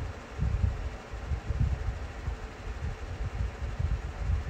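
Low, irregular rumbling on the microphone, in uneven pulses every fraction of a second, over a steady hiss.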